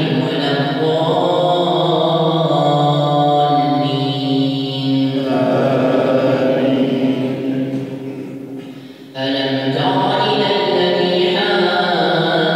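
A man's solo voice chanting Arabic in long, drawn-out melodic phrases, the recitation of an imam leading the night prayer. One phrase fades out about eight seconds in, and the next begins about a second later.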